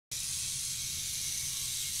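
Small battery-powered K'nex toy motor running steadily as the toy car drives itself: a constant high hiss with a low hum beneath.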